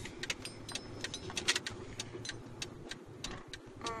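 Car turn-signal indicator ticking steadily, a few clicks a second, over the low hum of the car's cabin.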